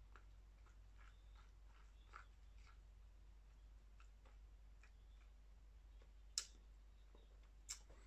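Near silence: room tone with a low steady hum and a few faint, sharp clicks, the clearest about six and a half seconds in.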